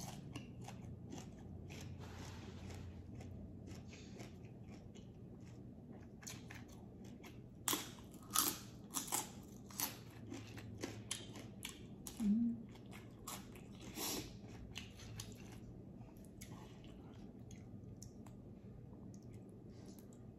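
Close-up chewing of crisp raw vegetables and fresh herbs: faint, irregular wet crunches, thickest in a run of loud bites about eight to nine seconds in and again around fourteen seconds.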